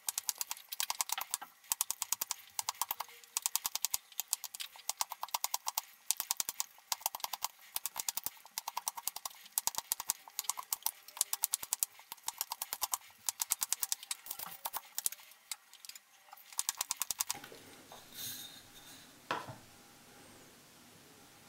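Carving knife slicing notches into a wooden stick: short bursts of crisp crackling clicks, a few cutting strokes a second. The cutting stops near the end, followed by softer handling noise and one sharp knock.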